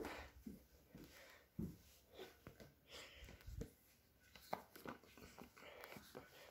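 Near silence: room tone with a few faint, short knocks and rustles.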